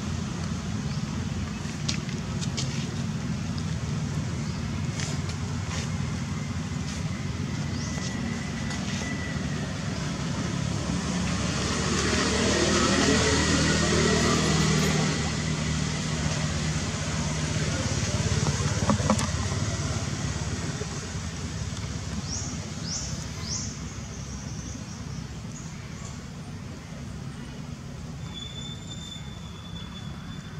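Steady outdoor traffic background, with a motor vehicle passing by that is loudest about halfway through.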